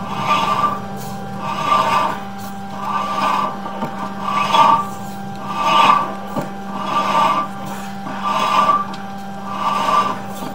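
Sewer inspection camera's push cable being pulled back out of the pipe in repeated strokes, scraping and rasping about once every 1.3 s. A steady electrical hum runs underneath.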